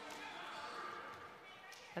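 Quiet indoor volleyball arena background between rallies: faint crowd voices with a couple of light knocks.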